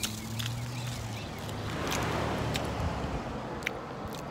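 A vehicle passing on the street, its noise swelling to a peak about two seconds in and then fading, over a low steady hum.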